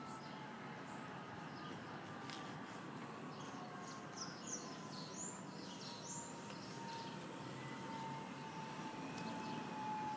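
Faint outdoor background noise with a few short, high bird chirps about halfway through, over a faint steady tone that slowly falls in pitch.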